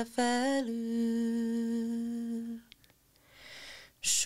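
A woman's voice humming one long held note a cappella, stepping slightly down in pitch under a second in and ending a little past halfway. After a short silence, a breath is drawn in before the next sung phrase.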